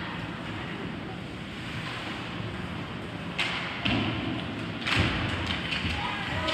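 Ice hockey game heard from the stands: a steady din of arena noise, then three sharp knocks of play on the ice about three and a half, four and five seconds in, the last the loudest.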